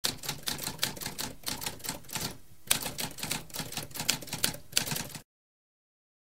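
Typewriter keys being struck in a quick, uneven run of several clicks a second, with a brief pause about halfway through. The typing cuts off abruptly a little after five seconds.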